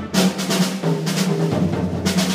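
Jazz big band playing, with saxophones, brass and drum kit. Held low notes run steadily beneath.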